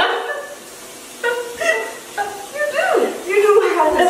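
Women's voices laughing and exclaiming, with a rising-and-falling exclamation about three seconds in.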